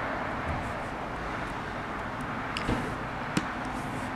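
Steady background hiss with a few faint, short clicks in the second half as resin diamond-painting drills are pressed onto the canvas with a drill pen.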